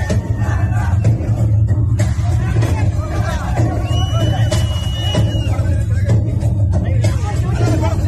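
Loud music with a heavy, steady bass over the voices of a large crowd. About halfway through there is a held high tone lasting over a second.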